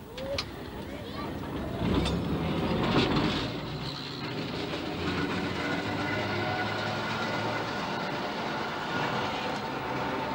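Tram running along street track: a continuous rumble with clattering from the wheels on the rails. The loudest knocks come about two and three seconds in, and a steady high tone joins in the second half.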